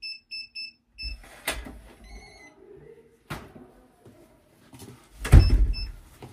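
Digital door lock keypad beeping as a code is punched in, about five short beeps. Then the latch clicks, the door opens with some rustling, and the door shuts with a heavy thud about five seconds in, followed by two short beeps as the lock sets again.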